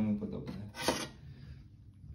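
A Jura X9 coffee machine at the end of a cappuccino: the sound of its milk frothing dies away, with a short noisy hiss about a second in, then it goes quiet.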